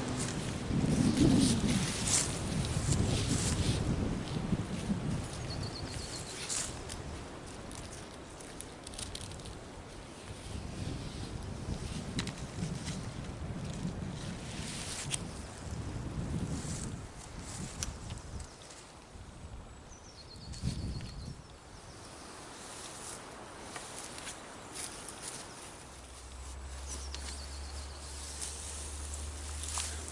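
Rustling, handling noises and footsteps as tree-hugger straps and hammock suspension are fitted around a tree, with a few faint bird chirps.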